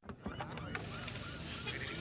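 A flock of birds calling: many short overlapping calls, with a few sharp clicks.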